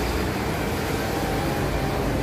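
Diesel engine of a single-deck city bus pulling away from a stop, a steady low rumble with a faint steady whine above it.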